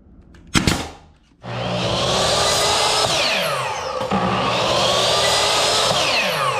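A brad nailer fires once about half a second in. Then an electric miter saw runs twice while cutting plastic moulding strip, its whine rising as the blade spins up and falling away as it winds down after each cut.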